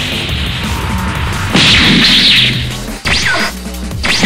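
Cartoon fight sound effects over electronic background music: a rushing whoosh, then a loud smashing impact about a second and a half in, and another shorter hit with falling whistly tones near the end.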